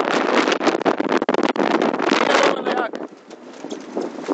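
Wind buffeting the phone's microphone in gusts. It is heavy for about the first two and a half seconds, then eases off.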